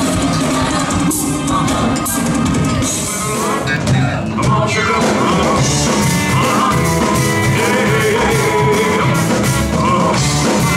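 A band playing rock music with a lead vocal over it. About four seconds in the music changes, and a rock-and-roll song with a singer carries on from there.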